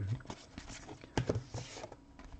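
Soft rustling and light clicks of a stack of trading cards being flipped through by hand, with two sharper ticks a little after a second in.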